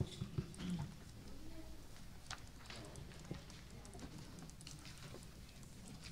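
Scattered faint clicks and taps over low room noise, with a brief low murmur of voices in the first second.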